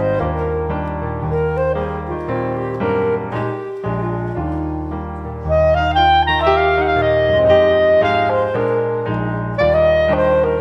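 Clarinet playing a legato melody over a piano accompaniment with bass notes that change about once a second. The clarinet climbs higher and louder about halfway through.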